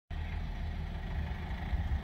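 A car engine running at low speed as the car moves slowly through the car park, heard as a steady low rumble.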